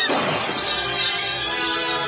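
Music with a sudden shattering crash right at the start, sounding like breaking glass, its ring trailing off over about a second.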